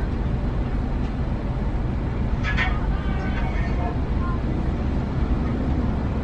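Car engine idling, heard from inside the cabin as a steady low hum, with a faint voice briefly about two and a half seconds in.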